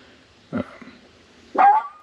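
A dog whining: one short whine that rises in pitch and then holds steady, near the end.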